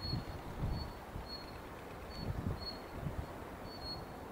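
Wind buffeting the microphone in uneven gusts, with about six short, high chirps from a small bird scattered through it.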